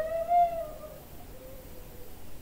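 Flute music: one last note bending up and down, fading out about a second in.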